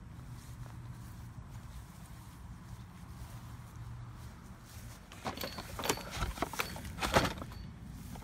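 Handling of a plastic hose reel cart: a few irregular clicks and knocks from about five seconds in, over a low steady rumble.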